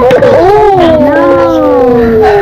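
A child's long, drawn-out "ooooh" that slowly falls in pitch for nearly two seconds, with a light clack of plastic paint jars being stacked just before it.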